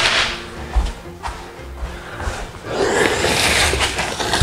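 PVC skirting board being handled: a sharp clack at the start, then a broad scraping swish near the end as the board is slid into place against the wall and floor panels.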